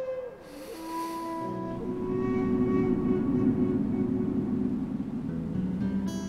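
Background score: a held flute-like note bends downward and ends shortly after the start, then low bowed strings swell in and sustain.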